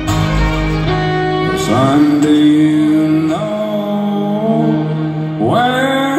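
Live acoustic country band playing an instrumental passage: a bowed fiddle carrying a sliding melody over strummed acoustic guitar and upright bass.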